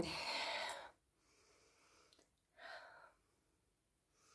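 A woman's breathy exhale lasting under a second, then a fainter short breath about two and a half seconds later. It is her reaction to the very strong perfume she has just sniffed.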